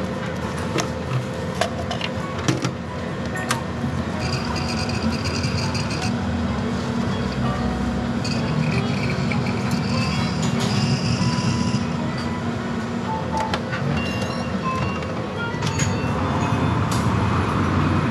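Convenience-store self-serve coffee machine running steadily as it brews a hot café latte into a paper cup, with a few clicks of the cup and the machine, under background music.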